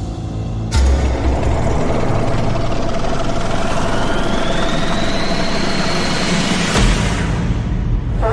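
A loud, steady, engine-like rumble with a sudden hit about a second in. A thin whine rises and levels off in the middle, and a second hit comes near the end.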